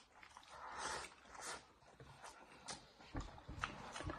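Faint eating sounds from a man eating with chopsticks from a bowl: close chewing and mouth noises, with a soft hiss about a second in and a few small clicks.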